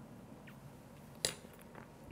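Quiet room with a faint tick and then a single sharp click about a second and a quarter in, as small cast porcelain pieces are handled and fitted together.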